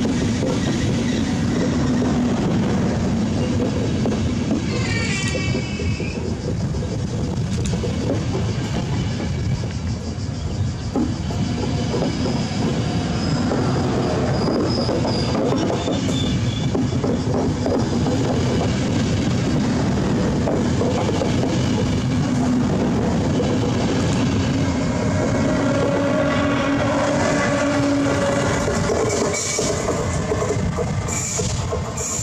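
A train of Intercity passenger coaches rolling past a station platform, a steady rumble with wheels clicking over the rail joints.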